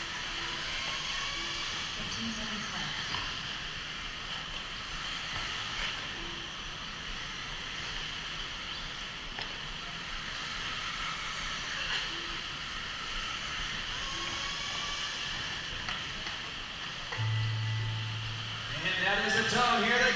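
Steady hall noise of an indoor arena during an electric RC buggy race, with a short low buzz near the end.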